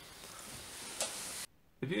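Steady background hiss of recording noise, brightest in the treble and slowly rising, with a faint click about a second in; it cuts off suddenly about a second and a half in, and a man starts speaking near the end.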